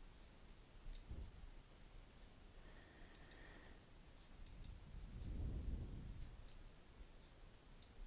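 Faint computer mouse clicks, some single and some in quick pairs, spread through quiet room tone. A soft low rumble comes a little past the middle.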